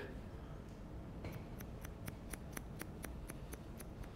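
Hairdressing scissors snipping through a held-up section of long hair: a quick run of about a dozen faint, crisp snips, roughly five a second, starting about a second in.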